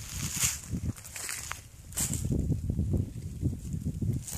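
Footsteps crunching and rustling through dry leaves and grass, in irregular steps, with the two loudest crunches about half a second and two seconds in.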